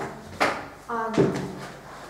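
A sharp knock about half a second in, then a short spoken word with a louder thud just past a second in.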